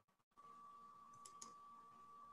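Near silence on a video-call audio line: faint room tone with a thin steady high tone, cutting out briefly right at the start, and a few faint clicks at about a second and a half in.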